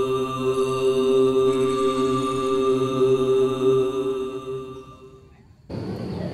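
Background drone music with a chant-like quality: a steady chord of long-held tones that fades out near the end. Just before the end it cuts to outdoor ambience.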